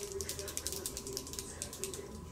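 Rapid ratcheting clicks, about a dozen a second, from the twist mechanism of a twist-up eyeliner pencil being wound by hand.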